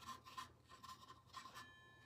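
Faint, quick, irregular scratchy strokes of a small paintbrush dabbing paint onto the wood inside a birdhouse's entrance hole.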